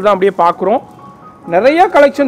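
A man talking over light background music, with a pause of about a second in the middle.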